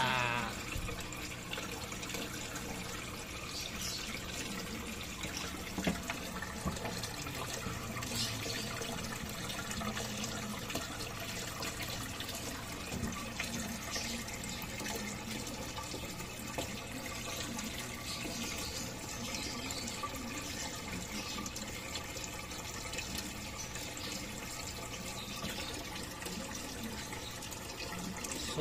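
Steady running, trickling water, with a faint low hum under it and a few soft ticks or splashes.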